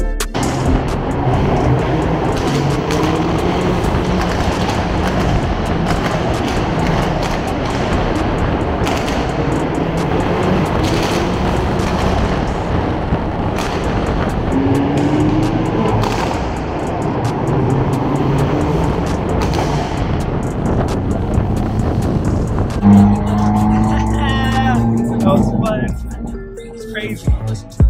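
Several Hyundai N cars with turbocharged 2.0-litre engines driving in convoy through a road tunnel. Their engines and exhausts run loudly and steadily, echoing off the tunnel walls, with a few sharp cracks scattered through.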